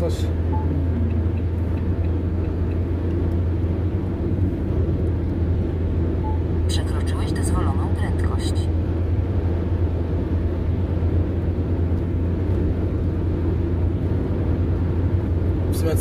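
Steady low drone of engine and tyre noise inside the cab of a vehicle cruising at motorway speed. A brief higher-pitched sound comes about seven seconds in.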